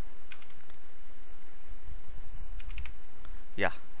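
Computer keyboard keys tapped in two short clusters, about half a second in and again near three seconds, typing letters to jump through the Registry Editor key list, over a steady low rumble.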